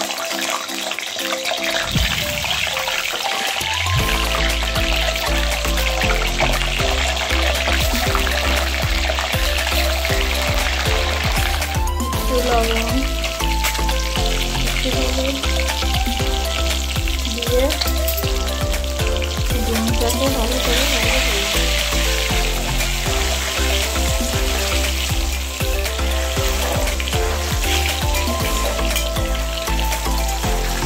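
Peeled boiled eggs sizzling as they fry in hot oil in an aluminium karai. Background music with a deep, repeating bass plays over it, coming in strongly a few seconds in.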